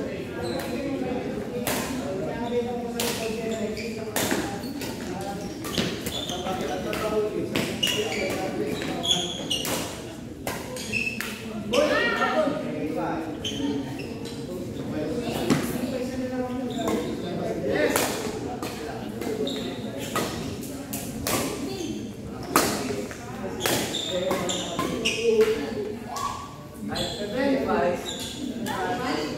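Badminton rally: rackets strike the shuttlecock with sharp cracks every second or two, echoing in a large gym hall. People talk in the background throughout.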